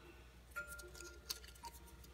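Faint crinkling and a couple of small clicks of a paper slip being folded by hand.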